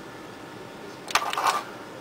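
Quiet room hiss, then about a second in a sharp click and a brief rattle as a small metal-cased TEAC TO-122A test tone oscillator is set down on a workbench.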